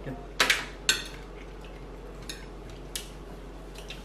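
Forks and utensils knocking against plates while eating: a sharp double clink about half a second in, another just before one second, then a couple of lighter taps later.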